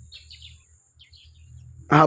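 Birds chirping faintly in two short runs of calls, one near the start and one about a second in, over a thin steady high tone and low background rumble; a man's voice begins at the very end.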